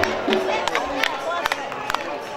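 Football crowd voices shouting as the ball goes into the net, with scattered sharp claps and music from the stands behind.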